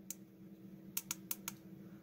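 Small tactile push-buttons on a DDS signal generator kit board clicking as they are pressed to step the waveform mode: one click at the start, then four quick clicks about a second in, over a faint steady hum.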